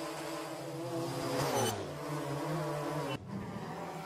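Quadcopter drone's motors and propellers whirring in a steady pitched buzz, the pitch sliding down about a second and a half in, with a brief break about three seconds in.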